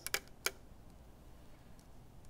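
Glass marbles dropped into a glass petri dish on a scale's metal pan: a few sharp clinks in the first half second, then faint ticking as the marbles roll and settle in the dish.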